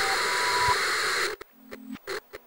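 Television static hiss with a thin steady whine over it, cutting off abruptly a little over a second in; a few clicks and a brief low hum follow.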